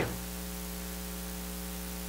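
Steady electrical mains hum with a layer of hiss, a buzz of evenly spaced steady tones that holds at one level.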